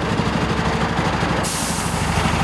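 City bus engine running as the bus pulls up and stops, a fast, even low throb. About one and a half seconds in, a loud hiss of compressed air from the bus's pneumatic system joins it.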